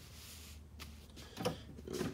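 Faint rubbing of a hand smoothing a heat-press cover sheet laid over a tank top, with a couple of light clicks and a short louder sound near the end.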